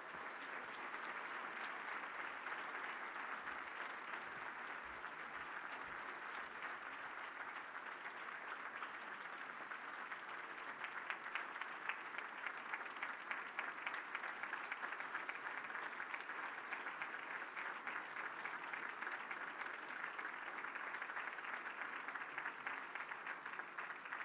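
Audience applauding steadily: a dense patter of many hands clapping, a little louder and sharper from about eleven seconds in.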